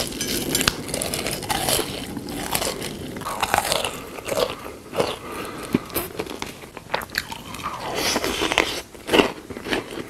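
Close-miked eating sounds: irregular crisp crunching bites and chewing.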